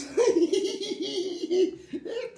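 A person laughing: a quick, even run of short 'ha-ha' pulses that stops shortly before the end.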